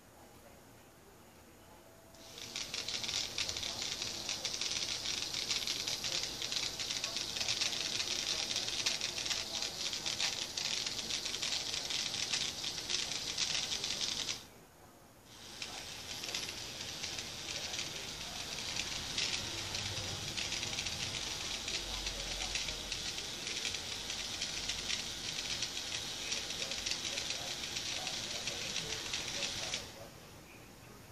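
K'nex toy motor running with its plastic gears rattling, driving the crane. It runs for about twelve seconds, stops for about a second near the middle, then starts again.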